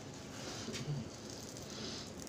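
Crisp fried milkfish (daing na bangus) being torn apart by hand, with a few faint crackles of the fried skin and flesh in the first second.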